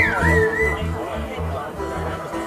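Live electric bass and electric guitar playing loosely: the bass plucks short, spaced low notes in a halting rhythm under light guitar, with a high gliding note at the very start.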